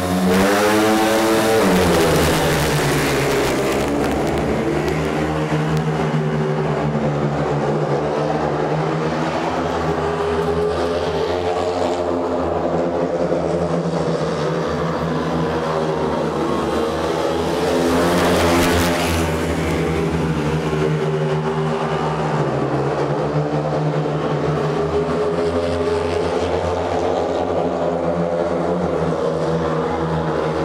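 A pack of four speedway motorcycles, each with a 500cc single-cylinder engine, accelerating hard away from the start gate, the engine pitch rising in the first couple of seconds. They then race flat out around the oval as one steady, overlapping engine drone that grows louder for a moment just past halfway.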